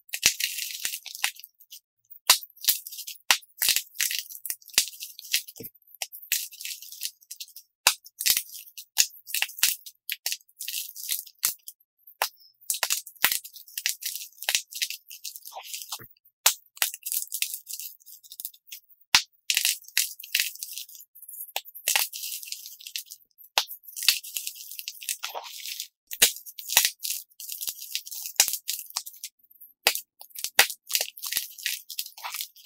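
Dyed chalk cubes squeezed and crushed between the fingers: crisp crunching and crumbling with sharp snaps and the gritty rattle of falling pieces, in bursts with short pauses. The footage is played back sped up, so the crunches come thick and fast.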